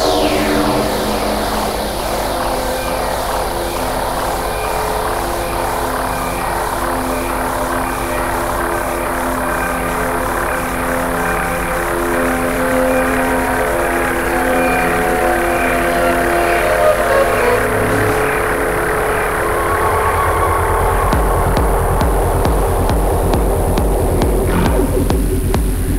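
Techno in a live DJ set: a breakdown of held synth notes with a falling sweep at the start and a steady hi-hat tick, with no kick drum. About twenty seconds in, the deep bass and the beat come back in.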